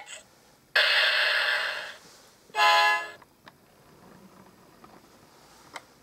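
Electronic sound effects from an Anpanman toy bus's speaker: a hiss lasting about a second that fades out, then a short steady horn toot about two and a half seconds in. A faint click comes near the end.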